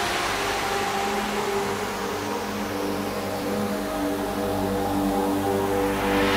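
Beatless intro of a progressive psytrance track: a hissing synth noise wash that slowly darkens as its highs fade, with several held synth pad notes swelling in beneath it.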